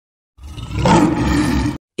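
A bear's roar, a sound effect, lasting about a second and a half and cutting off suddenly.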